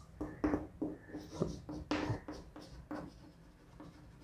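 Chalk writing on a blackboard: a quick run of short taps and scrapes as a line is drawn and letters are formed, stopping about three seconds in.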